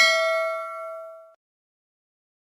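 A single bright bell ding, the notification-bell sound effect of an animated subscribe button, ringing out and fading away within about a second and a half.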